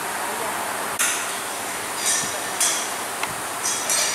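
Click-type torque wrench clicking as wheel nuts are tightened to 125 Nm: each sharp click signals that the set torque is reached. Three clear clicks, about a second in, a second and a half later and near the end.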